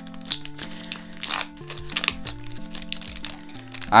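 Crinkling and tearing of a foil trading-card booster pack wrapper being opened by hand, in short irregular rustles, over steady 8-bit lo-fi background music.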